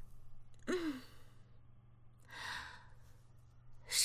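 A woman's contented sigh while stretching, the sound of feeling refreshed. It is a short voiced 'ah' just under a second in, its pitch rising then falling, followed by a long breathy exhale about halfway through.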